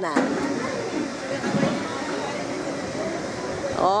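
Steady noise from the drop-tower ride as its seated carriage lifts off and climbs, with faint voices under it. A woman's voice comes in near the end.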